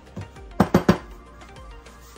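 Three quick hard knocks about half a second in: an electric blade coffee grinder being tapped to knock out the last of the ground dried ginger. Soft background music plays throughout.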